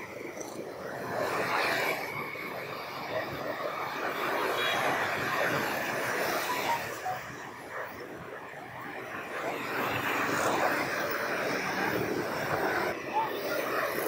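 Busy street traffic dominated by motorbikes and scooters passing close by, their small engines swelling and fading as each goes past.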